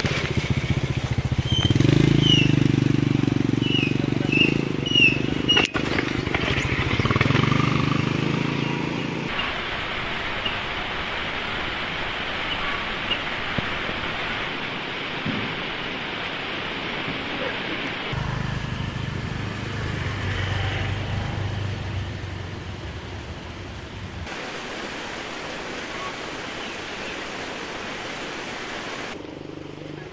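A small motorcycle engine running, with a few bird chirps over it. After that comes a steady rushing outdoor noise, and the engine is heard again for a few seconds past the middle.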